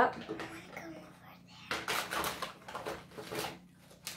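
Hard plastic toy tea-set pieces being handled and knocked together, with a run of short clicking and rustling noises in the second half.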